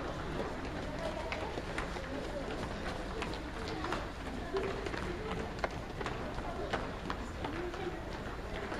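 A group of people jogging in sneakers on a hard indoor floor: many short footfalls at an irregular pace, with indistinct voices talking underneath.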